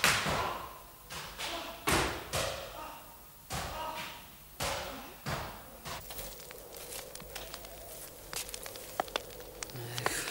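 Whip lashes: about seven strokes in the first five and a half seconds, each a swish ending in a sharp smack, then only faint small knocks and clicks.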